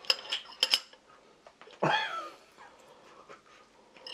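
Metal chopsticks clicking lightly against stainless-steel bowls, several small clinks in the first second. About two seconds in there is one short vocal sound whose pitch falls.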